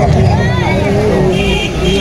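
A voice carrying over a loud, continuous low rumble, with the hubbub of a crowd.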